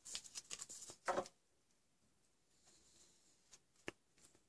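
Small parts handled by hand at a scroll saw: a thin steel blade being worked against its lower blade clamp, with a quick run of faint clicks and rustles over the first second or so. Then quiet, and one sharp click just before the end.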